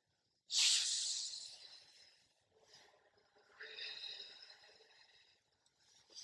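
A woman blowing hard onto a twig held to her mouth: a long breath out with a sharp start that fades over about a second and a half, then a second, softer blow about three and a half seconds in.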